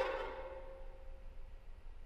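Solo violin holding a single soft note that fades away over about a second and a half, after a louder bowed phrase. A quiet pause follows before the next phrase.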